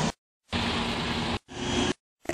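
Short snippets of street traffic noise with a faint steady hum, each cut off abruptly with dead silence between them. There is one of about a second and a shorter one near the end.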